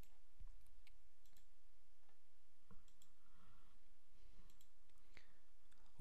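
A few faint, irregularly spaced computer mouse clicks over a low, steady background noise.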